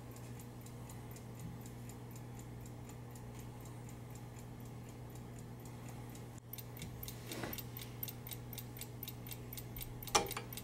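Clockwork movement of a Sargent & Greenleaf Model #4 safe time lock ticking evenly, about five ticks a second. The ticking is faint for the first six seconds, then clearer.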